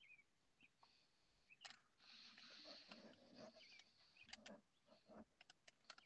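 Near silence: faint room noise with a soft hiss in the middle and a few faint clicks near the end.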